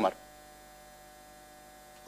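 Faint, steady electrical mains hum from the hall's sound system in a pause between spoken sentences, with the tail of a man's word at the very start.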